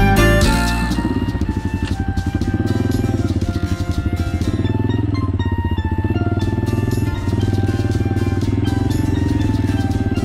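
Background music over a Honda XLR200R's single-cylinder four-stroke engine running as the bike rides along. The engine comes in about a second in, under the music.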